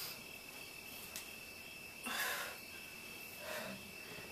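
A woman breathing with exertion during stability-ball back-bend sit-ups: two short soft breaths, about two seconds and three and a half seconds in, over a faint steady high-pitched tone.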